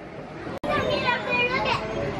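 Children's voices and chatter from other people, starting just after a brief sudden dropout about half a second in.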